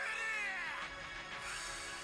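Episode soundtrack playing quietly: a man's drawn-out shout that rises and then falls in pitch over the first second, over background music with steady held notes.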